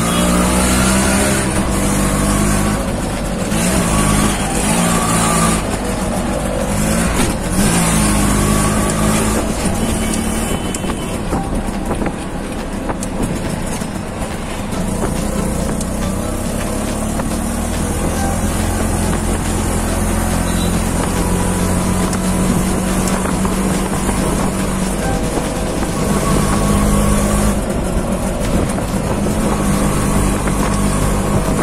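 Engine of a moving auto-rickshaw running steadily, heard from inside the passenger cabin, with road and traffic noise around it.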